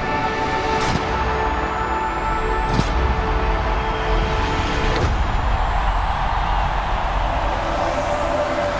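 Cinematic sound design from a product advert: a sustained droning chord over a deep rumble, with whooshes about one, three and five seconds in. A thin whine rises slowly through most of the stretch, and the chord changes about five seconds in.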